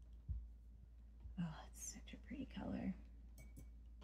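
A woman whispering quietly to herself for about a second and a half in the middle, too soft to make out words. A soft low thump comes just after the start and a couple of faint clicks near the end.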